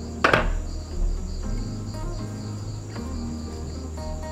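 Crickets chirping in a steady rapid pulse over soft background music. A short knock sounds just after the start as a wooden chair is moved.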